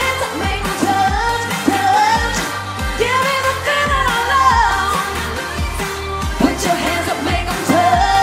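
Dance-pop song played loud over a live stage sound system: a steady electronic bass beat with singing and a melody above it.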